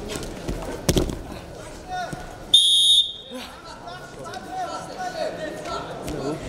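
A heavy thud as a wrestler is thrown onto the mat about a second in. A second and a half later comes a loud, shrill half-second blast of a referee's whistle, stopping the action. Spectators' voices and shouts run throughout.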